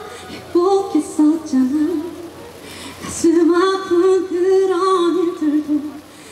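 A woman singing a ballad unaccompanied into a handheld microphone, in two long held phrases with a breath between them about three seconds in.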